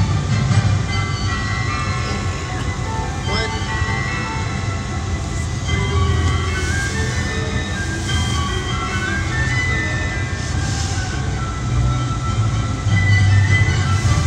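Holiday music playing for a synchronized Christmas light show: melody lines stepping in pitch over a steady low bass.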